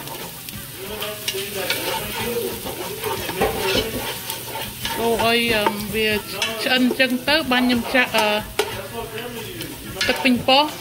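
A wooden spoon stirring and scraping minced aromatics sautéing in oil in a nonstick pot, with a steady sizzle. A voice talks in the background in the second half.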